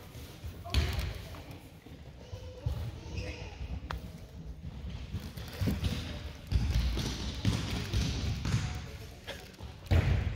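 A volleyball bouncing a few times on a hardwood gym floor, irregular dull thumps with some echo, under faint voices. A sharp smack right at the end as the ball is served.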